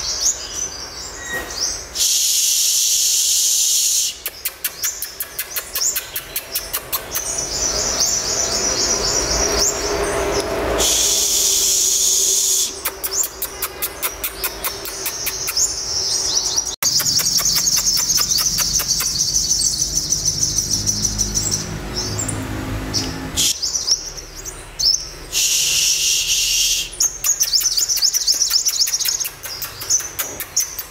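Caged sunbirds singing rapid, high-pitched twittering trills. Three loud hissing bursts of about two seconds each break in, and the audio cuts off abruptly partway through.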